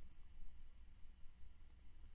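Two faint computer mouse clicks, one just after the start and one near the end, over a low steady hum.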